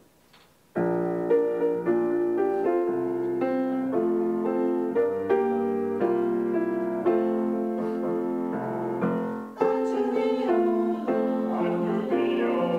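Grand piano playing a chordal introduction to a song, starting suddenly about a second in after a near-silent pause, with a brief break about two and a half seconds before the end.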